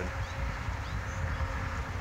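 Outdoor background noise: an irregular low rumble, with a few faint, short high chirps.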